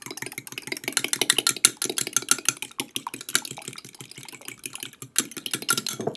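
A fork beating two eggs in a glass measuring cup: a fast, steady run of clicks as the tines strike the glass.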